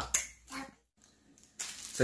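A single sharp snap-like click just after the start, then a faint short sound, followed by a stretch of dead silence.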